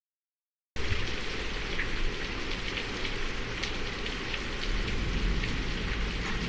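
Heavy rain at the onset of a hurricane, falling steadily with scattered individual drop splashes; the sound cuts in suddenly under a second in.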